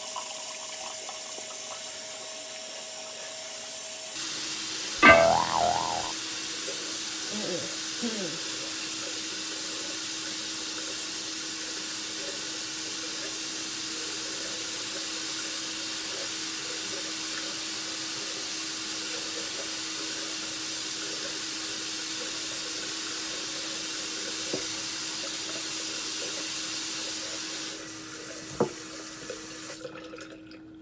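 Bathroom sink faucet running steadily. The flow gets louder about four seconds in and is shut off shortly before the end. A brief loud pitched sound comes about five seconds in, and there are a few small clicks near the end.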